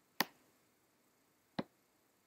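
Two sharp computer mouse clicks about a second and a half apart, the button pressed and released while dragging a curve handle.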